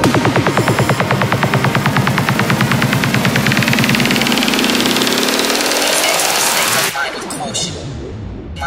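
Psytrance track in a build-up: a fast drum roll that packs ever tighter under a sweep rising in pitch, with the bass dropping out partway. It cuts off suddenly about seven seconds in.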